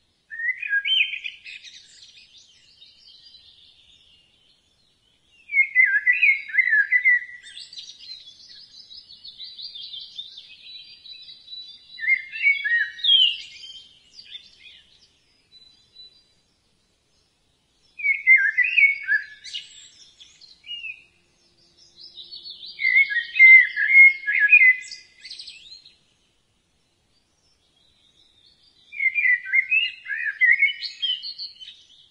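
Birds singing and chirping in about six separate phrases of a few seconds each, with short silent gaps between them.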